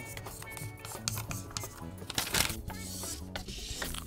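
Vinyl auto body wrap being pressed onto a wooden drum shell with a plastic squeegee and its backing paper peeled away: light rubbing and crinkling with scattered clicks, and one louder scrape about two seconds in. Background music plays underneath.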